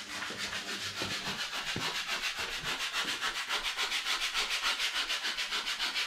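Sandpaper being rubbed by hand over a painted plaster wall in quick, even back-and-forth strokes, several a second, sanding down paint that is peeling off fresh plaster it was badly applied to.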